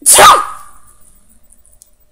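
A person's single loud sneeze, sudden and sharp at the very start, fading away within about half a second.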